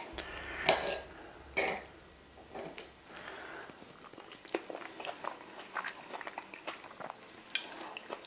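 A sharp clink of a knife and fork on a plate as a bite of eggs Benedict is cut, then a person chewing the mouthful, with many small irregular clicks.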